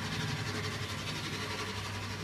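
Steady low mechanical hum with no distinct events.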